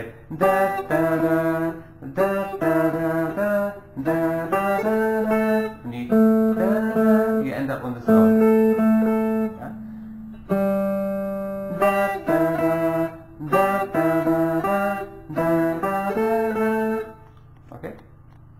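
Guitar picking a slow Phrygian-mode melody of single sustained notes in short phrases with brief pauses, and a man's voice singing the same notes along with it.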